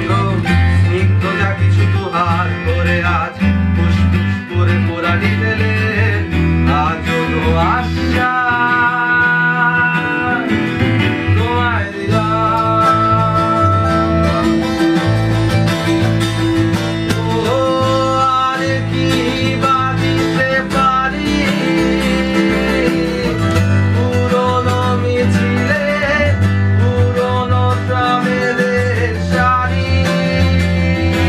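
A small band playing a song live: two strummed acoustic guitars over an electric bass guitar, with a man singing the melody.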